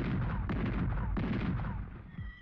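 A battery of field guns firing a barrage: heavy, booming shots that follow one another about every half second and run together into a continuous rumble.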